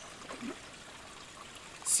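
Faint, steady trickle of a small stream running over rocks.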